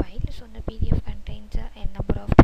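Only speech: a person talking.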